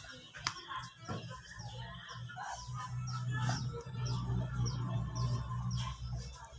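Small bird chirping, short falling chirps repeating about twice a second, over a low steady hum.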